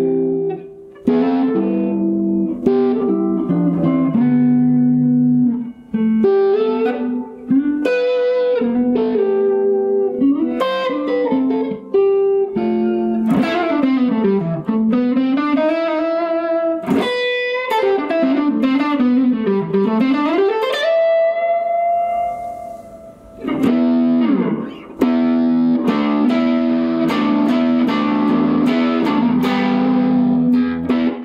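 Tom Anderson Cobra electric guitar played unaccompanied: chords and single-note lines, with two deep swoops in pitch that dive and come back up around the middle, then a long held note before the chords return.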